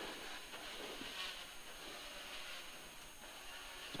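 Interior sound of a 1440cc 16-valve Mini rally car driving a wet stage: a faint, steady engine note and mechanical whine mixed with wet-road noise, heard muffled from inside the cabin.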